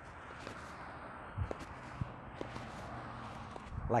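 Soft footsteps in flip-flops on grass: a few quiet thuds about a second and a half to two and a half seconds in, over faint outdoor background noise.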